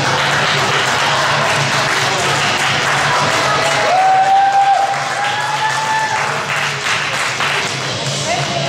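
Spectators clapping and cheering over background music, with one long high held cheer about four seconds in.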